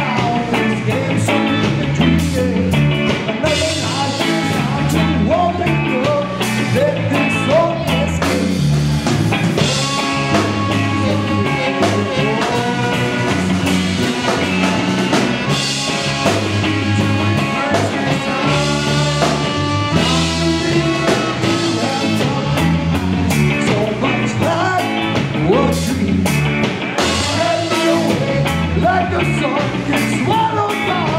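Punk band with a horn section playing live: singing over electric guitars, bass and drums, with trumpets, trombone and saxophone playing along.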